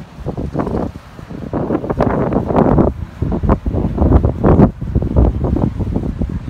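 Wind buffeting the microphone in irregular gusts, a low rumbling noise that swells and drops several times.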